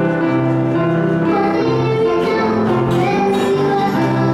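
A young girl singing a worship song into a microphone, accompanied by piano and acoustic guitar.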